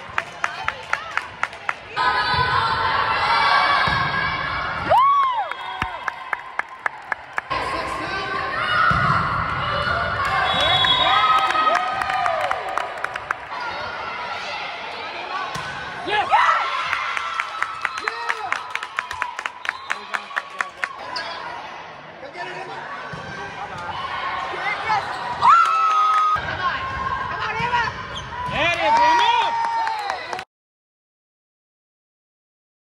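Sounds of an indoor volleyball match echoing in a large gym: sharp ball strikes, some in quick runs, among players and spectators shouting and cheering.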